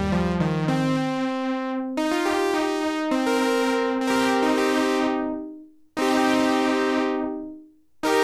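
Sustained synthesizer pad chords played through a June-60 analog chorus pedal with both chorus modes engaged at once, its internal trim pots retuned, giving a rhythmic modulation. A new chord starts every one to two seconds, and the last two each fade away almost to silence before the next begins.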